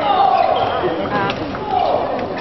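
Table tennis ball being struck back and forth in a fast doubles rally: sharp clicks of ball on bat and table. Over them come two loud voice calls whose pitch falls, one at the start and one near the end.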